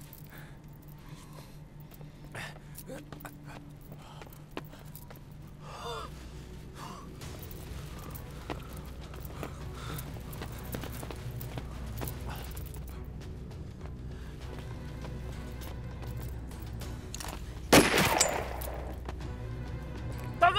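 A low, tense film-score drone with faint scattered clicks and scuffs. Near the end comes a sudden loud burst of gunfire that rings on for about a second.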